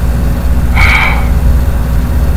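A steady low hum, with one short rasping noise about a second in.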